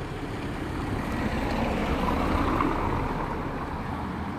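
A motor vehicle passing along the street: a steady engine and road noise that swells to its loudest about two seconds in and then fades.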